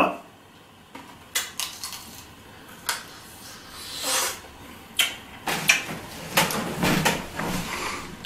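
Crunching and chewing of a Fini Booom Vampire sour candy ball, its hard shell cracked by the teeth to reach the chewing gum inside: a series of irregular crunches and clicks, thickest in the second half.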